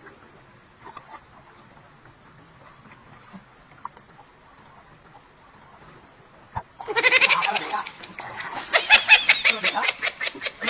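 A man laughing loudly and hard, breaking out about seven seconds in as fast, bleat-like pulses of laughter, after a single sharp knock just before. Before that only faint outdoor background.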